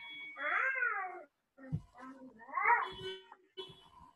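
Two drawn-out animal calls, each rising and then falling in pitch, the second about two seconds after the first.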